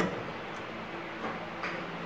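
A few faint clicks and taps as hands move round eggplants about in a stainless-steel bowl of salt water, over a low steady hum.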